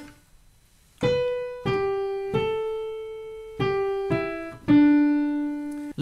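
Piano playing a short line of six single notes, each struck and left to ring and fade, starting about a second in and ending lower than it began: the accompaniment for a singer to sing the practice phrase over.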